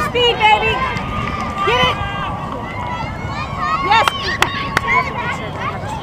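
Indistinct voices and shouts of sideline spectators and players across an open field, with a few sharp knocks about four seconds in.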